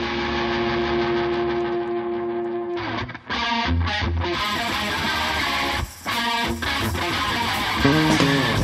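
Live rock band starting a song: an electric guitar holds a chord for about three seconds, then the full band comes in with choppy, rhythmic chords broken by a couple of brief gaps.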